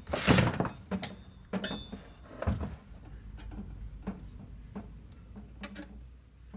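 Knocks and a clatter from a corrugated metal exhaust pipe and a sheet-metal heater box being handled. The loudest knock comes in the first half second, a lower thump follows about two and a half seconds in, then a few small clicks.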